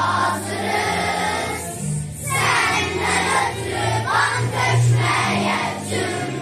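Children's choir singing together over an instrumental accompaniment with low, steadily held notes, with a short break in the voices about two seconds in.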